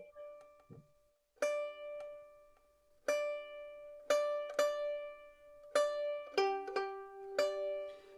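Open fiddle strings plucked about seven times, each pluck left ringing and fading, a check of the fiddle's cross-G (GDGD) tuning before playing.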